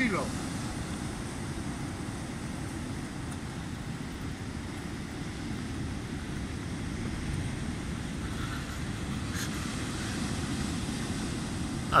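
Steady low rumble of ocean surf breaking on rocks.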